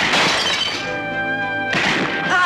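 Dramatic film score of held chords, broken by a loud crash-like burst right at the start that lasts under a second, and a second burst of noise near the end.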